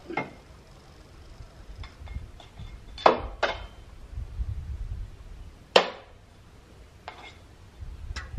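A fat-bike wheel and tire being handled while a rag is pulled out from under the freshly seated tire bead: sharp clicks, two close together about three seconds in and another near six seconds, with soft low rumbling between.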